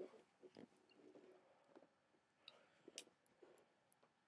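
Near silence, with faint rustles and a few soft clicks and knocks from handling; the strongest comes right at the start and a sharp click about three seconds in.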